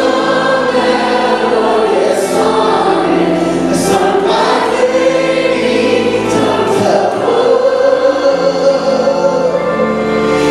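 A worship team of several singers, women and a man, singing a song together into microphones, with long held notes.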